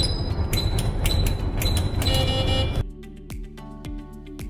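Elevator car operating panel buttons pressed one after another as a floor passcode is keyed in, each press giving a short high beep about half a second apart over a low hum, then a longer beep of several tones at about two seconds. The hum cuts off soon after, leaving background music.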